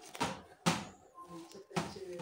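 Three short, sharp knocks spread across the two seconds, with faint voices in the background.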